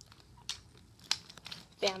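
Toy pieces being handled and connected, making a few light, sharp clicks about half a second apart.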